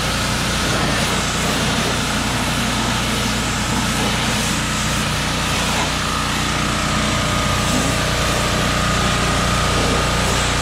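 Gas-engine pressure washer running steadily, its water jet hissing against the tyres and underbody of a side-by-side. The engine note and the spray hiss stay even throughout.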